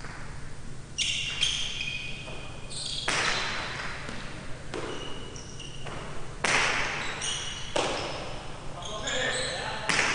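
Jai alai pelota cracking against the fronton's walls and floor, about six sharp, echoing impacts a second or two apart, with short high-pitched squeaks between them.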